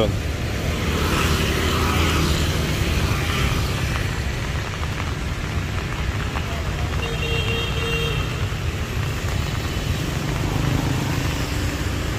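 City street traffic on a rain-wet road: a steady low rumble of passing motorbikes and cars, with a swell of tyre noise about a second or two in.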